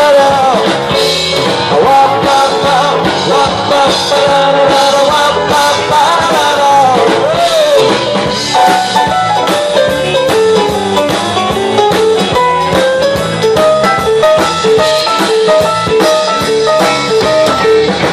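Live rock and roll band playing an instrumental break: an electric guitar lead over electric bass and drum kit, loud through a PA. The lead starts with long, bending notes and turns to short, quickly repeated notes about halfway through.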